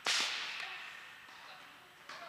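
A tennis ball struck hard by a racket: one sharp pop that rings on in a long echo through the indoor tennis hall, with a fainter knock just after it.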